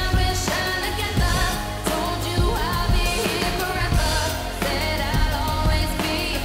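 Pop/R&B song: a woman singing over a steady programmed drum beat and deep, sustained bass.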